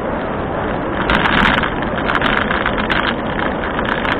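Steady wind rush and road noise on a bicycle-mounted camera while riding a paved cycle track, swelling a second in, with a few sharp clicks from the bike or mount.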